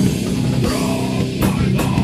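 Loud rock music with guitar and a drum kit, in a heavy, metal-like style, with several drum or cymbal hits cutting through the sustained low notes.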